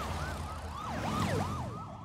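Several sirens yelping together in fast, overlapping rise-and-fall sweeps over a low rumble. They grow louder toward the middle, then ease off.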